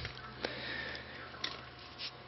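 Quiet pause with a faint nasal breath close to the microphone over a low steady hum, and two light clicks about half a second and a second and a half in.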